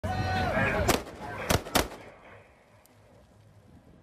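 Three gunshots fired at a shark, the first about a second in and the last two close together, over shouting voices at the start.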